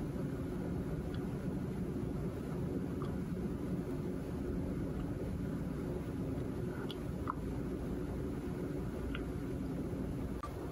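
Steady whirring hum of a desktop PC's cooling fans, with the CPU and graphics card under near-full rendering load. A few faint ticks come through.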